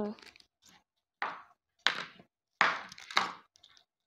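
Three short scuffs and knocks of craft items being handled and set down on a tabletop, with quiet gaps between them.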